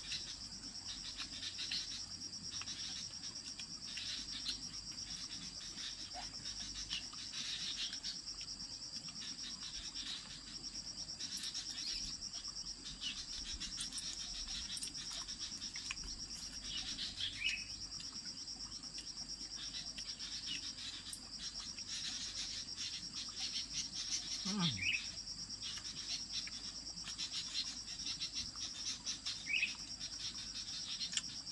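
Steady high-pitched chorus of insects droning in the vegetation, with scattered small clicks and rustles from hands pulling apart food on a banana leaf. One brief downward-sliding sound comes about 25 seconds in.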